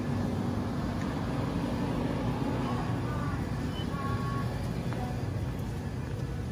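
Shopping cart being pushed along a store aisle: its wheels roll with a steady, rough low rumble.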